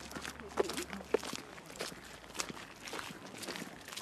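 Footsteps on rough outdoor ground: a string of short, irregular steps, with faint voices of people close by.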